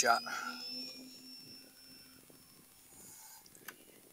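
Faint high whine of the RC F7F Tigercat's twin electric motors at full throttle on the takeoff roll, rising slightly in pitch and fading over about a second and a half. A single click near the end.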